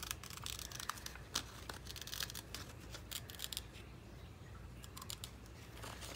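Small scissors cutting through magazine paper: a string of faint, irregular snips with light paper rustling, thinning out toward the end.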